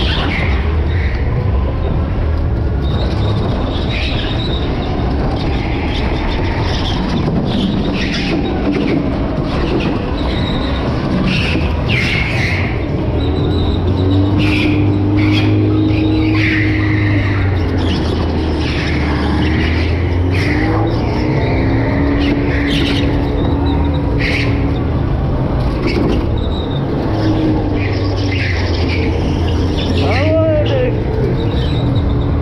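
Electric go-kart being driven hard around a track: a steady hum with the motor's whine rising and falling with speed, and short, high tyre squeals through the corners.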